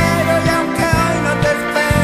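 Rock song playing: a steady beat on drums and bass, with a gliding melody line above.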